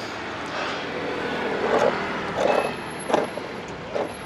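Road traffic on a street, a steady hum of passing cars and vans, with a few short louder sounds over it in the second half.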